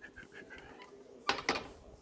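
Hard plastic phone belt clip handled against a PVC tube and set down on a table: faint light ticks, then two sharp clicks about one and a half seconds in.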